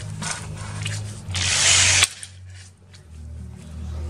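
Electric drill with a glass bit just fitted, triggered once in a short burst of under a second that cuts off suddenly.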